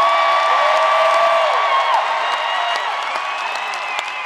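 Arena crowd cheering and applauding, with long high whoops from fans held over the noise: one rises and holds for about two seconds, and another comes near the end.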